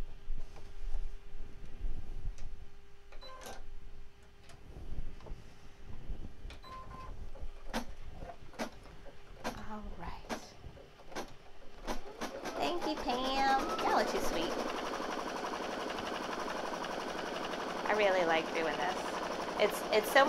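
Clicks and knocks as the embroidery hoop is fitted and buttons are pressed, then, about twelve seconds in, a Brother Innov-is NQ3600D embroidery machine starts stitching. It gives a steady fast whirr with sliding whines from the motors that move the hoop, as it sews the tack-down rectangle for the last fabric strip.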